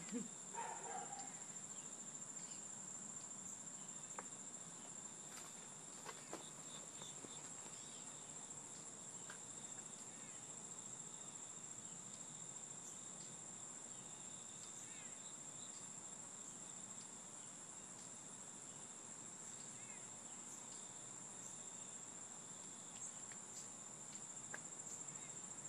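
Faint, steady high-pitched trilling of an insect chorus, unbroken throughout, with a few faint clicks.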